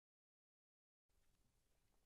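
Near silence: dead silence, then a very faint room tone from about halfway through.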